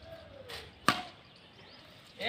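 A badminton racket strikes the shuttlecock once, a sharp crisp hit about a second in.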